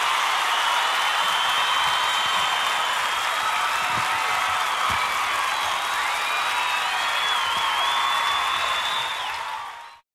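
Audience applause and cheering, with long whistles in it, fading out near the end.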